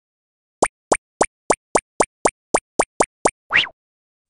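A run of eleven quick cartoon pop sound effects, about four a second, then one slightly longer pop that slides upward near the end.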